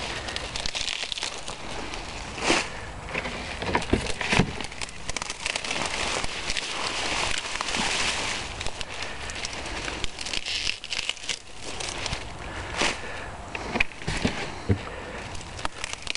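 Rustling leaves and crumbling soil as rutabagas are handled and the dirt is knocked off their roots, with a few sharp knocks scattered through.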